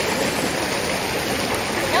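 Shallow rocky creek running over stones: a steady rush of water.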